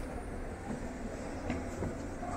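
Steady low rumble of a large, echoing museum hall, with faint distant voices and a sharp footstep-like click about one and a half seconds in.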